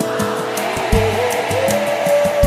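Live pagode band playing: steady percussion strokes and bass notes, with a long held melody note wavering over them.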